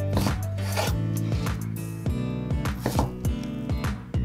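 Chef's knife cutting through a block of salami and striking a wooden cutting board in a run of repeated strokes, with background music.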